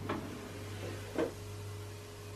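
Ninja dual-basket air fryer drawer being handled and pulled open: two faint clicks about a second apart over a low steady hum.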